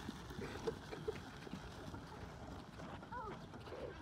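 Faint outdoor background with a few soft knocks, and a brief distant voice calling about three seconds in.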